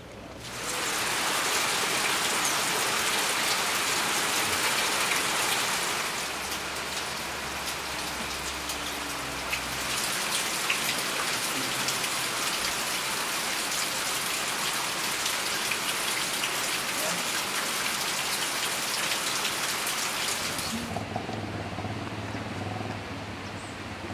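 Steady rain falling on forest leaves: a dense hiss that starts suddenly about half a second in, eases a little around six seconds and stops a few seconds before the end.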